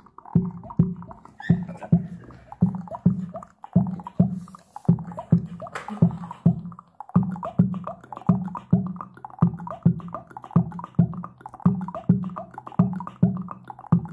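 A track with a steady, punchy beat of about two thuds a second, played through a compact two-way speaker with two small woofers and a tweeter, picked up by the microphone in the room. It is a listening test of the new speaker.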